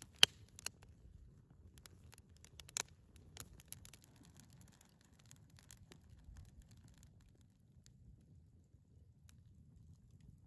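Wood campfire crackling and popping, with a sharp pop just after the start and another about three seconds in; the crackles thin out after about four seconds over a faint low rush.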